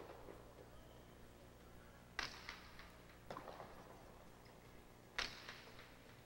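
A jai alai pelota strikes the court walls with two sharp cracks about three seconds apart, each followed by a short echo. A softer knock falls between them.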